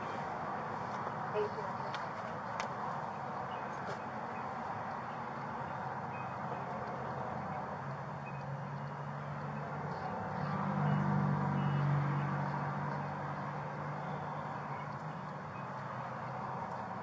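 Steady hum inside a parked police car with its engine running, with a low drone that swells about ten seconds in and fades a couple of seconds later. A few faint clicks come early in the stretch.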